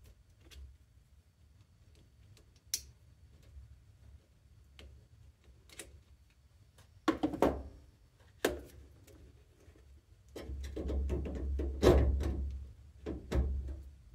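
Small plastic clicks and knocks as wire connectors are pushed onto a washing machine's new water inlet valve solenoids, with a sharper knock and rattle about halfway through. Near the end, a few seconds of rubbing and rustling as the rubber hoses and wiring are handled.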